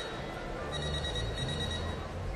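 Opera-house intermission bell ringing: a high, rapid electric ring that breaks off at the start, then rings again from under a second in, signalling that the interval is about to end.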